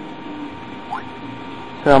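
Steady background hum and hiss, with a faint short rising whistle about a second in; a man starts speaking near the end.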